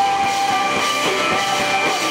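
Live rock band playing: electric guitar holding sustained notes over bass guitar and a drum kit keeping a steady beat.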